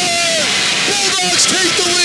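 A radio announcer's long, drawn-out shout of "Score!" that falls away about half a second in, followed by more excited shouting. Under it is the noise of an ice hockey arena crowd cheering a goal.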